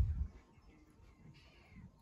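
A cat meows once, about a second and a half in: a short, faint call that rises and then falls in pitch. A few low thumps come at the start.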